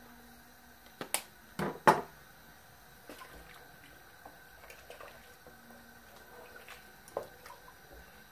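A sharp click and then a louder knock in the first two seconds, followed by faint sounds of a wooden spatula stirring a thick milky sauce in a stainless steel pot.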